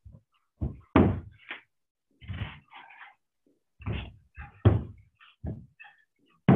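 Dumbbells set down and knocking on a wooden deck during renegade rows: about six irregular thumps, the loudest about a second in and just before five seconds.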